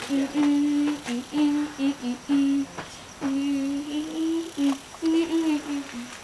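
A person humming a tune with closed lips: a run of about a dozen short and longer held notes, the pitch stepping up and down.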